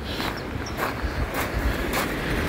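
Footsteps crunching on beach sand and pebbles, about four steps in two seconds, over a steady low rumble of wind on the microphone.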